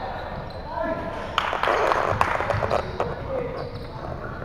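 Basketball game sounds on a hardwood gym floor: the ball bouncing and players' voices carrying in a large hall. A louder, noisy stretch with quick clicks starts about a second and a half in and lasts about a second.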